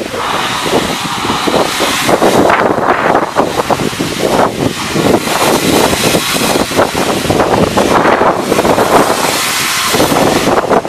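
Peckett 0-4-0 saddle tank steam locomotive pulling out, loud hissing steam blowing from it with irregular surges as its train rolls past.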